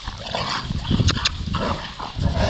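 Bernese mountain dogs play-fighting: a run of rough, breathy dog noises and scuffling, with a couple of short clicks about a second in.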